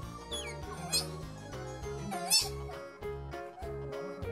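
Asian small-clawed otter pup giving high-pitched squeaks: a short falling one near the start, another about a second in, and a louder, wavering one a little after two seconds, over background music.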